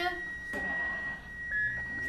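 Manual defibrillator sounding a steady high tone after charging to 150 joules, the signal that it is charged and ready to shock. A shorter, slightly lower beep comes about one and a half seconds in.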